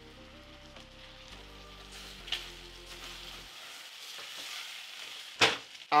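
Rinsed basmati rice, onions and garlic sizzling softly in oil in a stainless-steel saucepan while a spoon stirs: the rice is being toasted in the fat before the water goes in. The sizzle grows a little louder in the second half, over soft background music with steady held notes in the first half.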